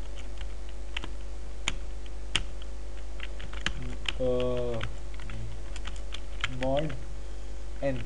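Computer keyboard typing: scattered key clicks, a few at a time, over a steady electrical hum. A short wordless voiced sound comes about four seconds in and again near seven seconds.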